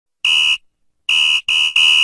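Electronic buzzer sounding four short high-pitched buzzes: one on its own, then after a short pause three in quick succession.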